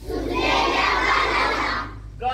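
A large group of young schoolchildren shouting a line together, many voices at once in one loud burst lasting nearly two seconds.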